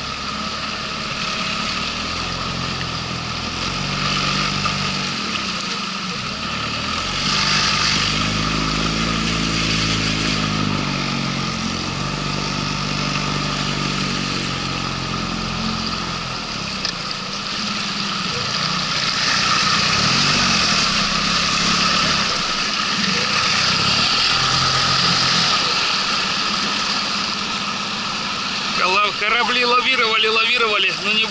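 Outboard jet motor on an inflatable boat running under load up a shallow rapid, its note rising and falling as the throttle changes, over the rush of water along the hull.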